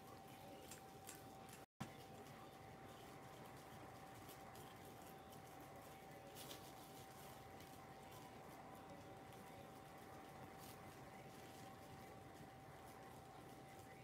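Near silence: room tone with a faint steady whine, and faint small crinkles and taps of plastic wrap being pressed by a finger to smooth decoupage paper onto a shell.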